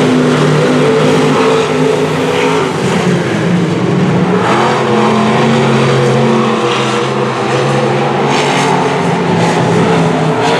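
A field of dirt-track stock cars racing around an oval, their engines running hard as a steady, loud blend of several engine notes that rise and fall as the cars accelerate and back off through the turns.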